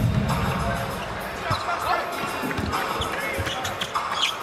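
Basketball dribbled on a hardwood court, a run of sharp bounces from about a second and a half in, over arena music and crowd noise.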